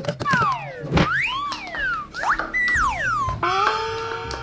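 Comic sound effects laid over the scene: a quick run of whistle-like tones gliding up and down in pitch, with a sharp hit about a second in, then a held, steady note from about three and a half seconds in.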